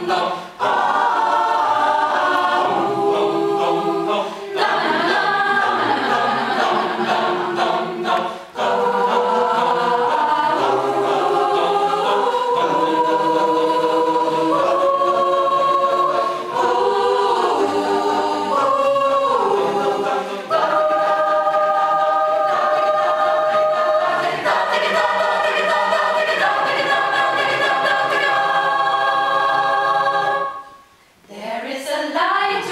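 Mixed choir of men's and women's voices singing a cappella in close-harmony chords, with short breaks between phrases and a long held chord near the end.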